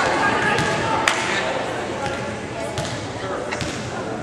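Sharp smacks of a volleyball in a gymnasium, the loudest about a second in and fainter ones later, over the chatter of spectators.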